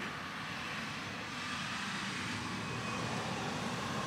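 A Camaro SS's V8 being floored some way off, heard as a steady engine noise with no clear note.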